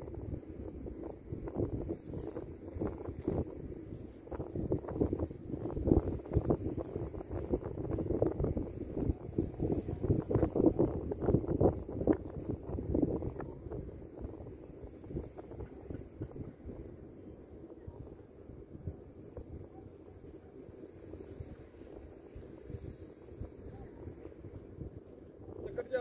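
Wind buffeting the microphone in uneven gusts, strongest through the first half and easing off about halfway through.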